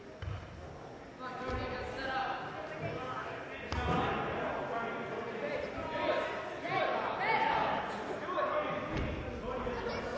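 Indistinct voices of several people calling out in a large gym, rising about a second in, with a few dull thuds in between.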